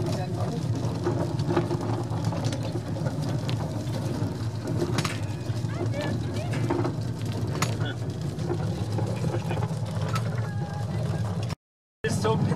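Steady low rumble of a horse-drawn railway car rolling along its rails, with faint voices in the background. It breaks off into silence just before the end.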